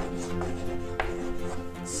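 Chalk tapping and knocking on a blackboard in a few sharp strokes while writing, over soft background music with held notes.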